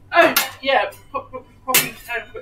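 Short bursts of a person's voice, broken by two sharp clattering knocks, one about a third of a second in and one near the end.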